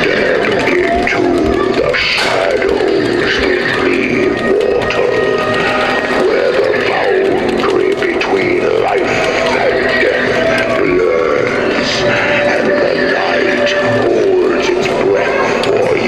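Music with a wavering voice woven through it, playing steadily and loudly from a Halloween animatronic prop's soundtrack.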